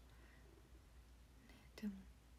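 Near silence: a pause in a woman's speech with faint steady room hum, broken near the end by one short spoken syllable.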